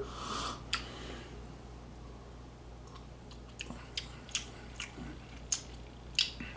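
Soft lip smacks and tongue clicks as a man savours a sip of tequila: a string of small sharp clicks from about halfway on, after a faint breath near the start.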